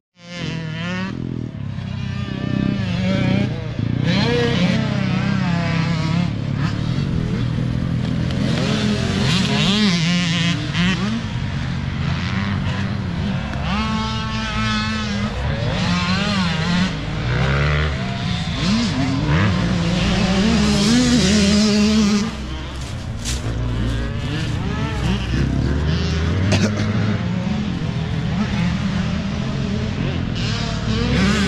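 Dirt bike engines revving up and down as riders go round a motocross track. Several bikes are heard at once, their pitch rising and falling with each throttle and gear change.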